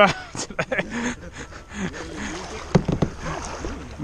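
A short laugh, then a kayak paddle working the water with light splashing and a few sharp knocks on the plastic hull, the loudest pair near the end, while a faint voice carries in the background.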